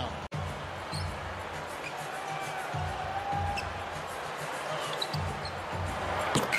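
Basketball being dribbled on a hardwood court: a series of low, irregularly spaced bounces in a quiet, near-empty arena.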